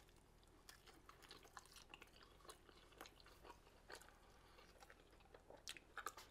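Faint chewing of a bite of a chopped-cheese sandwich on a toasted potato roll, heard as soft, scattered mouth clicks.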